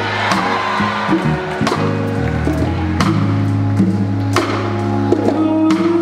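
Live soul band playing, with a held bass line under keyboards and drums. Sharp drum and cymbal hits land about every second and a half.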